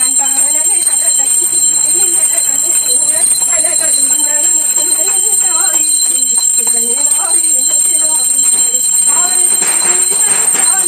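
Voices singing a devotional Hindu prayer in a steady, continuous line, with a small brass puja hand bell ringing steadily over it.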